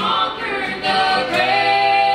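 Gospel trio, a man's voice with two women's, singing in close harmony. The voices settle on a long held note a little past halfway through.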